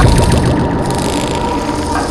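Soundtrack effect: a sudden deep falling boom, then a rushing, hissing noise with a faint steady tone, in a break between vocal passages.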